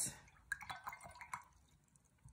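Faint light clicks and taps of painting supplies being handled, a few quick ones about half a second to a second and a half in.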